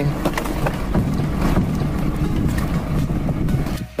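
Steady engine running at idle, with a few light knocks over it.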